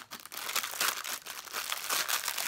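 Clear plastic sticker packet crinkling in the hands as it is pulled open, an irregular crackling rustle.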